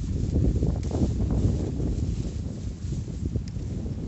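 Wind buffeting the phone's microphone, a continuous, irregular low rumble.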